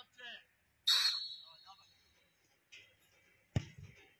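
A referee's whistle blown once, a short blast about a second in, signalling the free kick. About three and a half seconds in comes a single sharp kick of the football as the free kick is struck.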